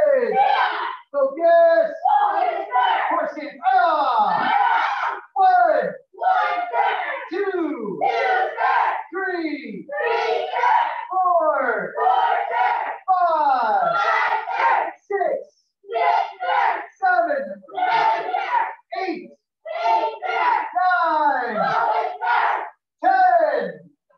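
A class of young martial arts students shouting in unison: short, loud calls about once a second, each falling in pitch.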